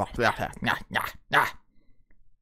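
A man's voice at close range in a quick run of about five short, harsh bursts, which then stop, leaving quiet.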